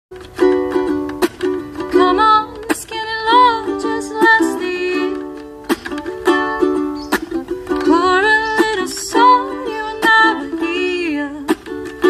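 Acoustic ukulele playing a strummed chord introduction: sharp strokes come every second or so, and the chords ring on between them.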